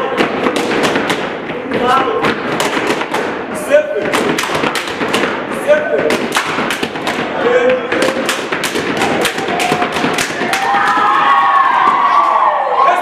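Gumboot dancers stamping and slapping their rubber gumboots in quick rhythmic clusters of sharp slaps and thuds, with voices calling out between the beats, louder near the end.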